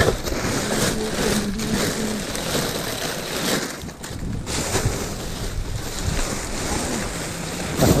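Clear plastic garbage bags rustling and crinkling as gloved hands pull and shove them around, a continuous noisy crackle that eases briefly about halfway through.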